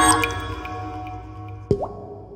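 A sustained synthesized musical chord fading away, then a single water-drop plop with a quick rising pitch about three-quarters of the way through.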